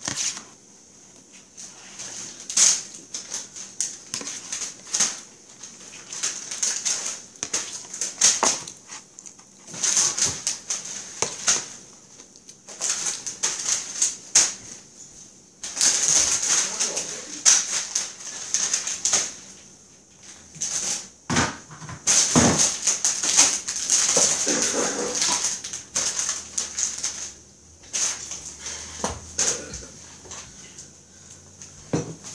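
Plastic grocery bags and food packaging rustling and crinkling in irregular bursts as groceries are handled and sorted, with light knocks of boxes and cans.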